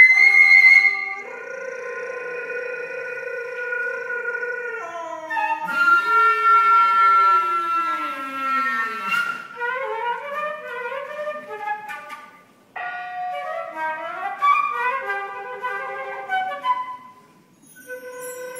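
Contemporary chamber music for flute and saxophone: held wind notes, then two lines gliding past each other in pitch, one rising and one falling, followed by quick short notes with a brief break a little past halfway.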